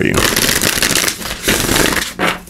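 A deck of oracle cards (the Wild Offering Oracle) being shuffled by hand: a rapid run of fine card flutters and clicks in two spells, with a brief break about halfway through.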